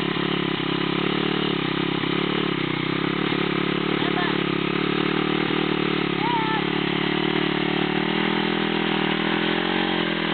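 Motorcycle engine running steadily at a constant speed, without revving.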